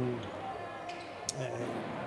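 A handball bouncing on the sports hall's court floor: a few short, sharp knocks about a second in, over the hall's low background.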